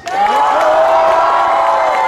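Concert audience cheering and screaming with applause, many high voices at once, breaking out suddenly and holding loud.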